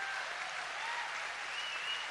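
Audience applauding, a steady even clapping.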